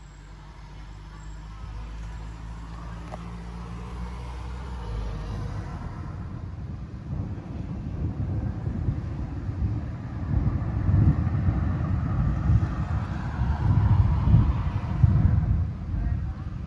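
Low rumble of a thunderstorm, swelling steadily. In the second half it turns uneven and gusty.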